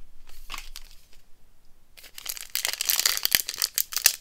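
The plastic wrapper of a 2024 Score football card pack crinkling and tearing as it is pulled open by hand. There are a few light handling rustles at first, then dense continuous crinkling from about halfway through.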